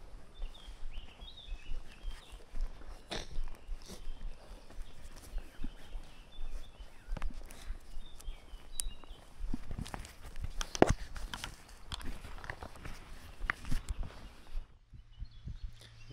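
Footsteps walking along a grass path, an irregular run of soft crunches and rustles, with a few short bird chirps in the background during the first half.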